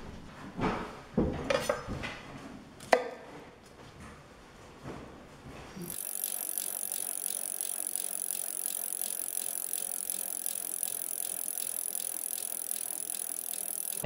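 A knife cutting Brussels sprouts on a wooden cutting board, a few separate knocks in the first few seconds. About six seconds in, this gives way abruptly to a steady, fast ratcheting clatter that lasts to the cut.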